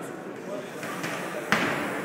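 A single sharp thud about one and a half seconds in, ringing on in the echo of a large sports hall, over the background chatter of spectators' voices.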